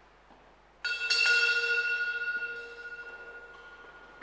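A hand-rung church bell cluster sounds a quick run of strikes about a second in, then rings on and slowly fades. It is likely the sacristy bell signalling the priest's entrance for Mass.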